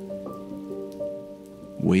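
Rain falling on a wet road, under soft background music of held notes that shift a few times. A voice begins right at the end.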